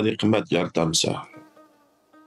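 A voice speaking for about the first second, then trailing off, leaving faint background music with steady held tones.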